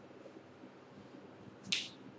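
Quiet room tone with faint small ticks, then one short, sharp click near the end.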